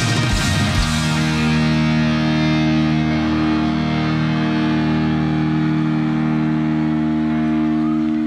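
Live rock band ending a song: the pounding drums and guitars stop about a second in, and a final chord is held and rings on steadily.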